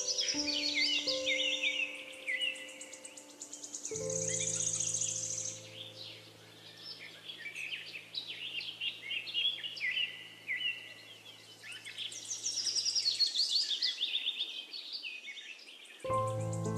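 Songbirds singing busy, overlapping chirps and rapid trills, over soft slow solo piano: a few notes at first, then a chord about four seconds in that rings and fades away.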